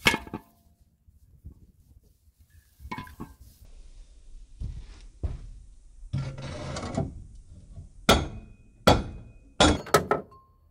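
Metal knocks and clanks from dismantling an old air conditioner: the heavy compressor set down, then the plastic fan being worked off the electric motor's shaft, with a rasping scrape and three sharp strikes in the last two seconds.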